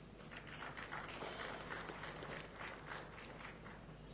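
Faint, scattered hand-clapping from a few audience members, a few soft claps a second, over the hall's low background.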